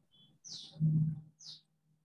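Birds chirping, short high calls falling in pitch, about one a second. A louder low hum or rumble comes about a second in.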